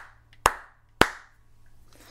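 Two sharp hand claps about half a second apart, evenly spaced like a count-in before the song, over a faint low hum.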